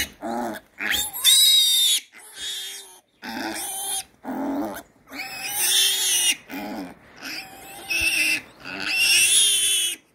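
A day-old piglet squealing loudly and repeatedly, with calls of about a second each and short breaks, in distress while restrained with its mouth held open for needle-teeth clipping.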